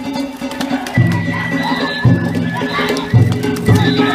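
Music from a danjiri float procession over crowd noise: a repeating pattern of held low notes, each about a second long, starting about a second in.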